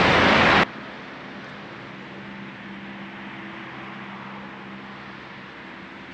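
A loud rushing noise cuts off abruptly under a second in. What follows is a steady, faint mechanical hum with a low, even drone.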